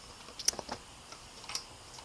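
A few light clicks and ticks of plastic as an Intel stock CPU heat sink, its fan and push-pin feet, is handled and turned over in the hands; the sharpest click comes about half a second in.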